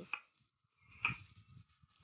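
Mostly quiet, with one short soft knock about a second in: a stone pestle handled in a stone mortar (cobek) of fried peanuts and chillies.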